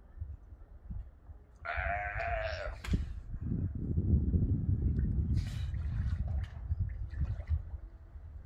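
A sea lion gives one wavering, bleating call lasting about a second, some two seconds in. A louder low rumbling noise follows for several seconds.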